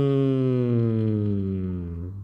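A man chanting one long, drawn-out closing syllable of 'sathu', the Buddhist blessing, held on a single note that slowly sinks in pitch and fades away at the end.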